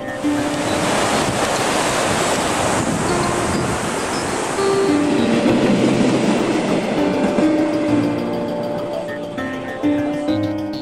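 Rushing noise of a passenger train passing close by, swelling in the middle and fading near the end, under background music with sustained tones.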